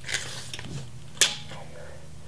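Tape measure being handled along a steel track bar: a short scraping rustle at the start and a single sharp click just over a second in, over a low steady hum.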